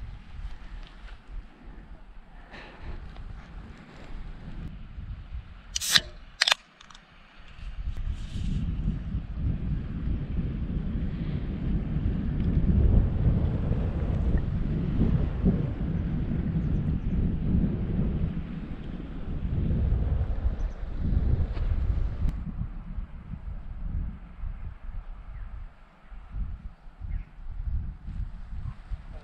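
Wind buffeting the camera microphone in gusts: a low rumble, strongest from about eight seconds in to about twenty-two seconds and lighter before and after. Two sharp clicks come about six seconds in.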